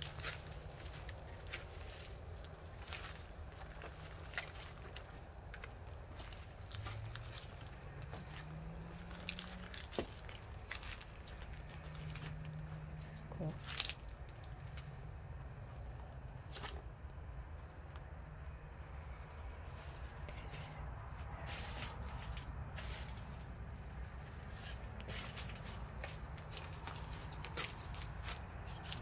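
Scattered footsteps and small knocks from people walking about in the dark, over a low steady hum, with a short rising tone about a quarter of the way in.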